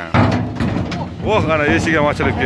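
Knocking on a hollow steel gate panel, a dull, low, resonant sound that starts suddenly just after the beginning and dies away after about a second.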